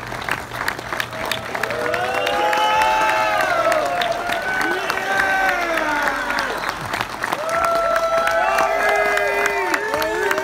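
A crowd cheering and clapping, with many raised voices calling out at once and sharp claps in the first couple of seconds. The cheering swells about two seconds in, dips briefly, and swells again near the end.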